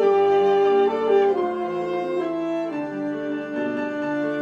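A violin, alto saxophone, flute and piano quartet playing together in held, overlapping notes that change about every half second to a second, with a low bass note coming in at the start.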